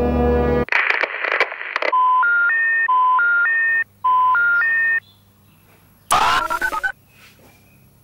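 A low horn-like drone cuts off, followed by a burst of noise. Then a telephone intercept tone, three rising beeps, plays three times. A short loud burst comes near the end.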